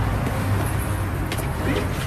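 City street traffic noise: cars going by on a wet road, a steady low rumble, with a couple of faint knocks about halfway through.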